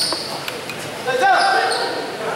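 A basketball bouncing on the court during a game, with a sharp impact right at the start and people talking throughout.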